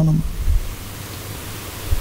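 Steady hiss with a low hum from the microphone and sound system. It follows a man's chanted verse line, which ends on a held note right at the start.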